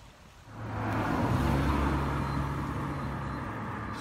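A motor vehicle's engine hum that comes in about half a second in, swells, then slowly fades before cutting off at the end.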